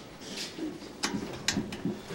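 A few sharp clicks from a school locker's combination padlock being worked: the lock has been swapped, so his combination does not open it.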